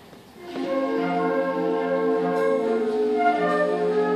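High school wind band playing: after a short quiet pause it comes back in about half a second in, holding sustained chords at a steady level.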